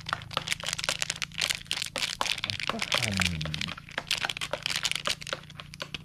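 Plastic wrapper of a Cadbury Dairy Milk chocolate bar crinkling and crackling steadily as it is handled and the chocolate broken out of it, with a brief voice near the middle.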